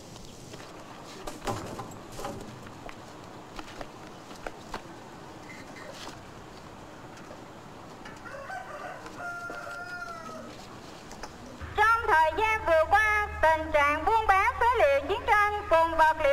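Faint rustling and clicks, then a rooster crowing faintly about 8 to 10 seconds in. From about 12 seconds a loud voice makes an announcement through horn loudspeakers, with a steady low hum under it.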